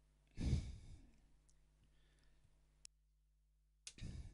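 A heavy sigh or breath blown into the race caller's open microphone about half a second in. Near the end a click cuts the microphone's background hum out for about a second, then another click and a second breath come through.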